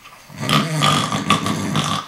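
A man's drawn-out, rough throat noise, starting about half a second in and lasting about a second and a half, not words.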